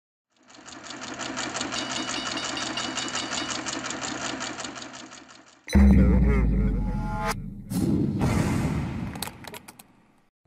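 Logo intro sound design: a fast, buzzing pulse runs for about five seconds, then a loud, deep boom hits about halfway through. A whoosh and a few glitchy clicks follow and fade out.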